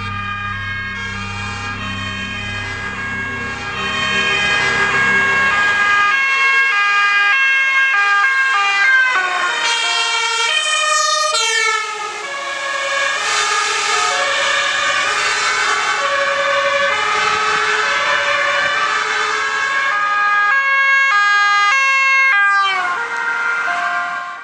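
Two-tone sirens of Dutch emergency vehicles, several overlapping and alternating between high and low notes as the vehicles race past. The pitch drops as vehicles go by, about ten seconds in and again near the end. Background music with a bass beat plays under the sirens for the first few seconds.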